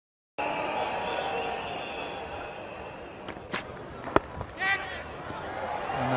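Cricket bat striking the ball with a single sharp crack about four seconds in, as the batsman flicks a delivery away for four, over steady background noise of the ground; a brief voice follows just after the hit.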